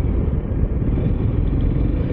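Motorcycle riding along at road speed: a steady, loud low rumble of engine and wind noise on the bike-mounted microphone.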